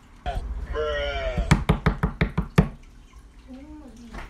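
A short call from a voice, then a fast run of about seven loud knocks in just over a second, like knocking on a door.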